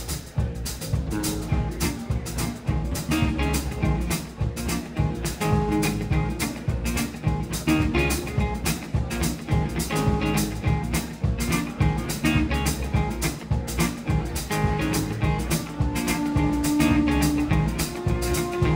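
A rock band playing the instrumental intro of a song live: acoustic guitar, electric bass and a drum kit keeping a steady beat, with a steel guitar holding long notes over them.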